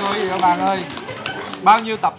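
Voices of a group of people exclaiming and talking over one another without clear words, with a short loud call near the end.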